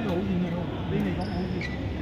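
A voice talking close to the microphone, with a few sharp clicks from a badminton game in a large hall, likely racket strikes on the shuttlecock, at the start, about a second in and again shortly after.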